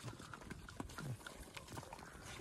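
Several dogs eating from plates on the ground: faint eating sounds with scattered small clicks.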